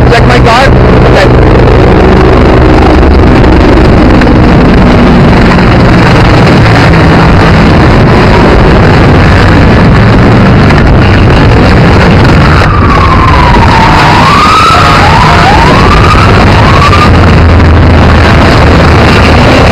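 Loud, steady rushing noise of traffic and wind on a handheld camcorder's microphone, with an engine hum in the first few seconds. A siren wails up and down near the end.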